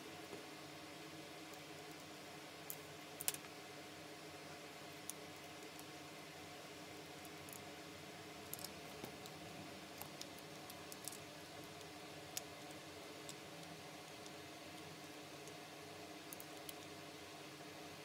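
Scattered small metallic clicks and taps from a hair trimmer's blade set being handled and screwed back on with a small screwdriver, the sharpest about three seconds in, over a faint steady hum.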